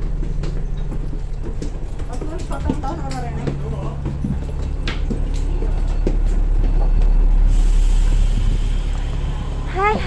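Bus engine idling with a steady low hum while passengers get off. A loud hiss fills about two seconds near the end.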